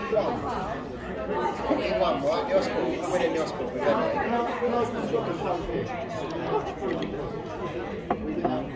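Chatter of several people talking at once, overlapping conversation in which no single voice stands out.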